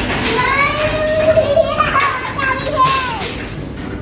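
Young children's voices calling out excitedly with high-pitched cries and no clear words, including one longer drawn-out call about a second in.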